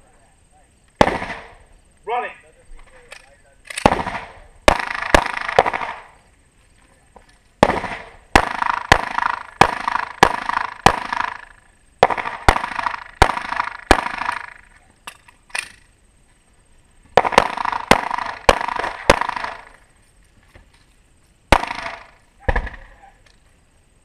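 Pistol shots fired in quick strings, about two dozen in all, in several bursts of three to six shots with pauses of a second or more between them. Each shot is followed by a short echo.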